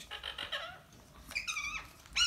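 Pet green parrot calling in its cage: a quick high chatter at the start, then a louder, held squawk that drops away at its end about a second and a half in.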